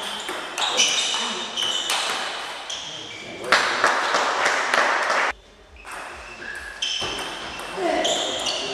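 Celluloid-type table tennis ball clicking sharply off bats and table in a quick rally. A burst of clapping and shouting follows about three and a half seconds in and cuts off abruptly after about two seconds. Scattered ball clicks resume near the end.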